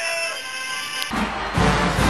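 Music: a quiet passage of held notes, then about a second in, loud marching-band music with heavy drums comes in suddenly.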